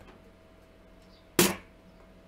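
A single snare drum sample hit played back from a drum machine, about a second and a half in: sharp and quickly dying away.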